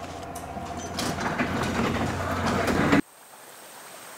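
Electric garage door opener running after its wall keypad is pressed: a steady motor hum with the door rolling up along its tracks, growing louder, then cut off suddenly about three seconds in.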